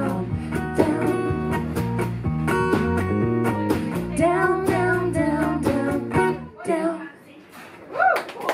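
A live acoustic folk trio plays the closing bars of a song: a woman singing over acoustic guitar, bass and drums. The music stops about six and a half seconds in, leaving a short lull.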